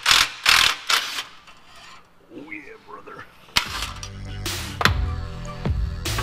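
A few loud, quick strokes of a hand tool on the exhaust pipe fasteners in the first second. About three and a half seconds in, electronic background music with a heavy bass beat starts.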